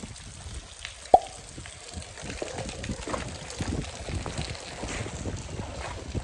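Heavy rain falling, with many scattered drips close by and one sharp, louder tick about a second in.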